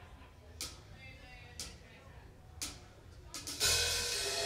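A live band's drummer counts in with three evenly spaced cymbal taps about a second apart, then the full band (drums, electric guitars, bass and keys) comes in loudly near the end.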